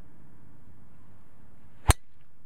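Driver clubhead striking a teed golf ball off a range mat: a single sharp crack near the end.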